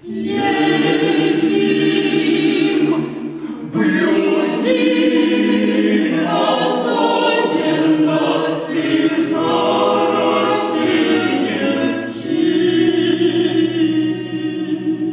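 Mixed chamber choir of men's and women's voices singing a cappella, entering together all at once after a pause and holding full sustained chords, with brief dips around four and twelve seconds in. Sharp sibilant consonants of the sung words cut through at several points.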